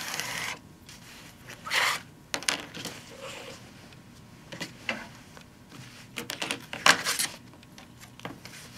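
A rotary cutter rolls through quilt backing fabric along an acrylic ruler at the start. After that comes handling noise: fabric rustling and a scatter of clicks and knocks as the quilt, ruler and cutter are moved about on a cutting mat, loudest in a short burst a little before the end.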